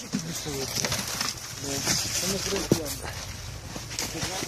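Men's voices talking quietly in the background, in short broken phrases, with a single sharp click about two-thirds of the way in.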